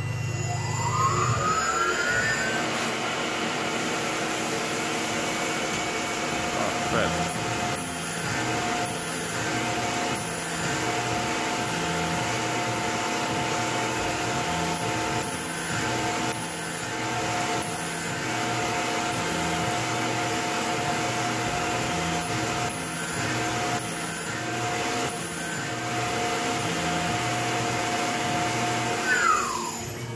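Tormach PCNC mill's spindle whining up to speed, then a letter F twist drill drilling a row of holes under flood coolant, with the coolant hissing and the cut going in a steady repeating rhythm. The spindle whine falls away near the end as it stops.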